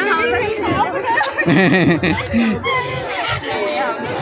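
Speech only: several people talking at once in overlapping conversation.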